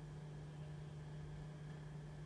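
Quiet room tone with a steady low hum and faint hiss.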